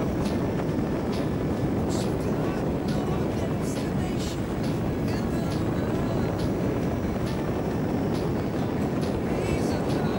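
Steady wind rushing over the camera microphone during a tandem parachute descent under an open canopy: a loud, low, even rush with a few faint flutters.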